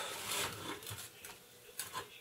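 Faint rustling handling noise that fades out partway through, with one brief click near the end.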